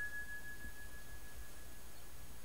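The ringing tail of a single high, clear chime: one pure tone that fades away over about a second and a half.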